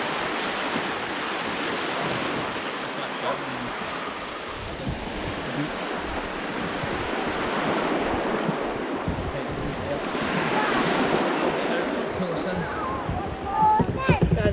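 Small waves breaking and washing around a kayak's hull in choppy shallow water, with wind buffeting the microphone.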